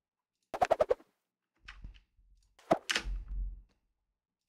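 A quick rattle of about six sharp clicks, then a fainter scrape, then a single sharp knock followed by a low thump.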